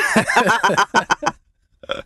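People laughing in a run of short bursts that fade out about a second and a half in.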